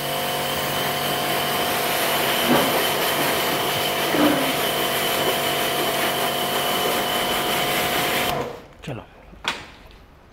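Electric pressure washer running, a steady motor-and-pump hum under the hiss of the water jet spraying onto hands and a small part; it cuts off suddenly about eight seconds in.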